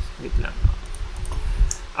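A few faint, short clicks over low bumps and rumble close to the microphone.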